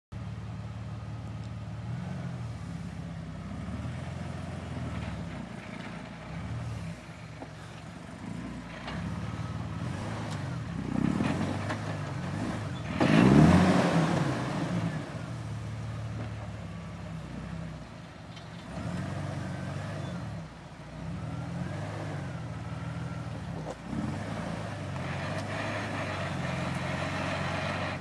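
Jeep engine running at low revs as it crawls up a steep rocky trail, the pitch and level shifting with the throttle, with a brief hard rev about halfway through.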